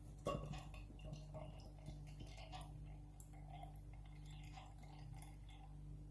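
Beer being poured slowly from an aluminium can into a glass: a faint, uneven trickle and fizz of foam with scattered small ticks, and a light tap about a third of a second in.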